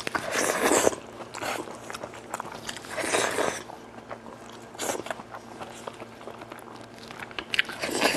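Close-miked eating sounds of a person biting and chewing spicy braised goat meat, with small wet mouth clicks. Two louder bursts come about half a second in and about three seconds in.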